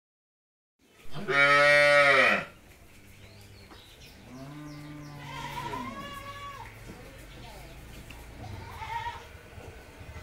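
Cattle mooing: one loud moo starting about a second in, then a second, quieter moo a few seconds later.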